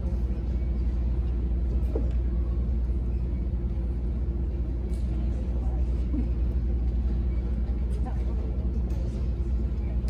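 Steady low rumble of room noise with faint murmured talk from the audience, and no music playing.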